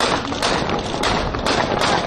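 A rapid series of about five loud, sharp bangs or thumps, roughly two a second, over a dense noisy background.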